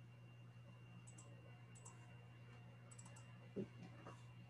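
Faint computer mouse clicks over a low steady electrical hum: a double click about a second in, another just before two seconds, a quick run of three or four clicks near three seconds, then a brief soft thump.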